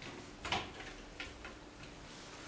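A few short, sharp clicks in a quiet room with a faint steady hum: one louder click about half a second in, then three lighter ones.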